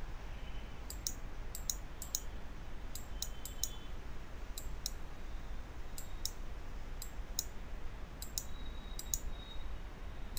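Computer mouse button clicking: about fifteen short double clicks, press and release, at an uneven pace, as a soft brush is dabbed onto a layer mask. A faint steady low hum lies underneath.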